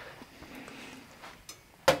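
Faint steady hiss from a preheated gas grill whose plancha has just been oiled, fading about a second in. A voice starts right at the end.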